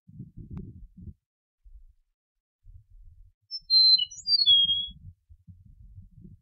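Eastern meadowlark singing one short phrase of flutelike whistled notes about halfway through, ending on a longer, slightly falling note.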